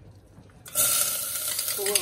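Onion hitting hot olive oil in a stainless steel saucepan: a loud sizzle starts suddenly about two-thirds of a second in and keeps going. The oil is hot enough that the cook immediately turns the heat down.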